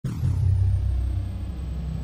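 Logo-reveal sound effect: a deep rumble that starts suddenly and holds steady, with a thin high tone sliding down in pitch over the first half second.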